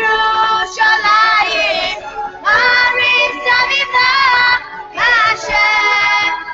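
A song playing: a high sung voice with vibrato over instrumental backing, in phrases of a second or two with short breaks between them.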